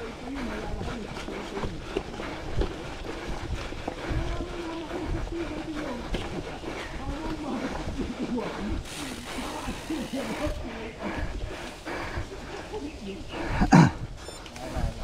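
Gravel bike rolling along a rough dirt trail: a wavering hum that rises and falls, with frequent knocks and rattles from the bumps. There is a louder thud just before the end.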